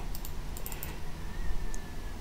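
A quick run of light clicks from a computer keyboard, then one more click near the end.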